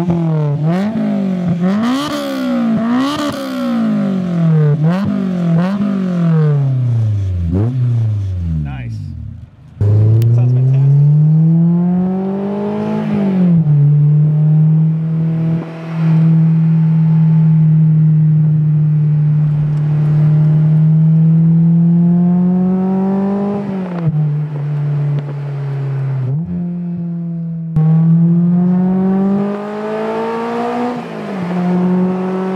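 Honda S2000's 2.0-litre inline-four through an Invidia N1 exhaust with a Berk high-flow cat, revved about seven times at standstill, each rev rising and falling quickly. After a break it is heard from inside the car pulling hard with climbing revs, dropping at an upshift, running steadily at cruise, then rising through more shifts near the end.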